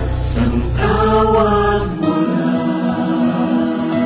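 Music: several voices singing together in a Tagalog song, with the low bass notes stopping about halfway through.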